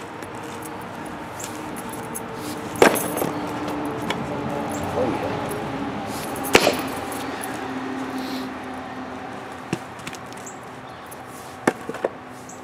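A heavy fireman's axe striking and splitting red oak rounds: two sharp, loud chops about four seconds apart, then lighter knocks near the end.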